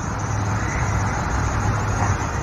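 Steady low outdoor rumble with no voice over it.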